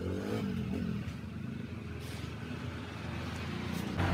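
A motor vehicle running, a steady low rumble that grows louder near the end.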